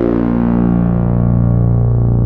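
Behringer K-2 (MS-20 clone) synthesizer holding one sustained low note through its LM13600 filter with resonance turned up. The bright attack mellows as the filter closes, and a resonant peak slides down in pitch near the end.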